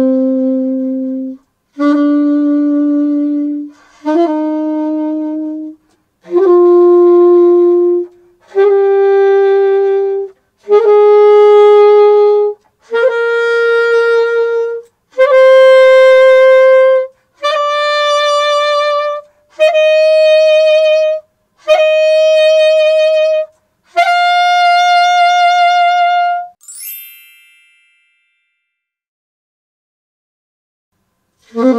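Saxophone playing a C major Pralltriller exercise: about a dozen held notes of roughly two seconds each, rising step by step, each opened by a quick flick up to the note above and back. The last note is held with vibrato, followed by a brief high swish and then silence.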